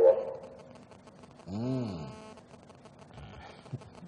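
A short vocal sound about a second and a half in, rising then falling in pitch, with a fainter one near the end; otherwise quiet.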